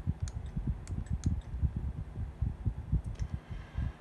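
Air from a small desk fan buffeting the phone's microphone: an irregular low rumbling with a few faint clicks.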